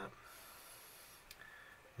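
Near silence: room tone with a faint hiss for about a second, then a single small click.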